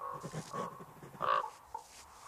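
A series of short, pitched animal calls, the loudest about a second and a quarter in.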